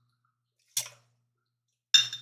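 Mostly near silence, broken by one short click a little under a second in and a clink with a brief ringing tone at the very end, as a bottle is poured into a cocktail jigger.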